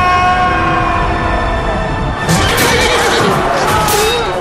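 Film battle soundtrack: held notes of a film score, then from about halfway a run of sharp crashing impacts with a horse whinnying over them.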